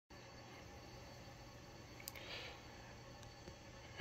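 Near silence: faint steady background noise with a faint low hum and two faint clicks.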